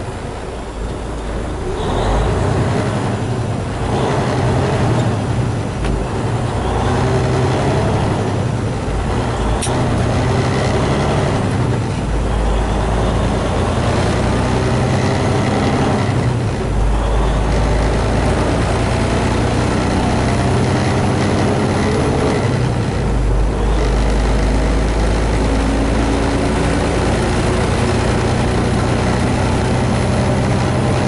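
Semi truck's diesel engine heard inside the cab, pulling up through the gears as the truck gets under way. The engine note repeatedly climbs and drops back at each shift over the first half, then settles into a steady drone with road noise.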